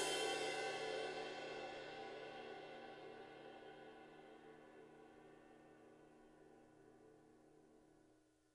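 Zildjian 21" A Sweet Ride cymbal in Brilliant finish, struck a last time right at the start and then left to ring, its many overtones fading steadily over about eight seconds. Near the end it is choked by hand and the sound cuts off suddenly.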